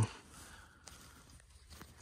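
Near silence with faint handling noise and a couple of light clicks.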